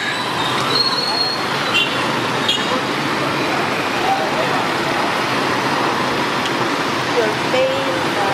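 Steady street traffic noise from vehicle engines, with faint voices of people in the background.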